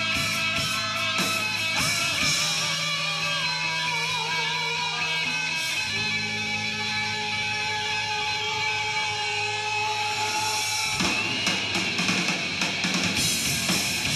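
Live heavy metal band playing an instrumental passage: guitar holding long notes, some of them wavering, over sustained low bass notes. About eleven seconds in, the drum kit and full band come crashing in.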